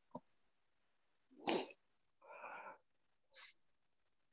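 A person's faint breathing sounds close to the microphone during a pause: a short, sharp breath about a second and a half in, then a softer breathy sound and a brief faint puff near the end.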